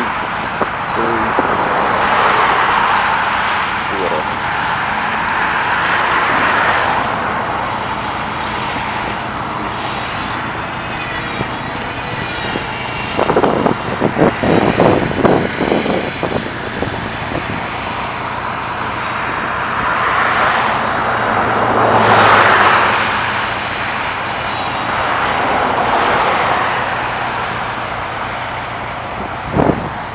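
Road traffic: vehicles passing one after another, each a whoosh of tyre and engine noise that swells and fades over a few seconds. A choppy stretch of louder noise comes about halfway through.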